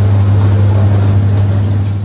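A loud, steady, low electrical hum: one low tone with a fainter overtone above it, over faint shop background noise.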